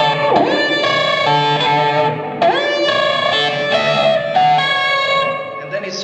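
Electric guitar through an amp playing a slow single-note melody on the high E string. Notes slide up into pitch and are held, in two phrases, the second starting about two and a half seconds in.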